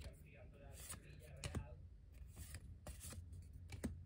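Weiss Schwarz trading cards handled in the hand, a few faint, irregular clicks and slides as one card is moved behind another.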